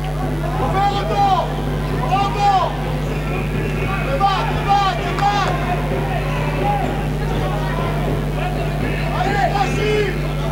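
Athletic shoes squeaking on the wooden handball court in short rising-and-falling chirps as players run and cut, over a steady low electrical hum.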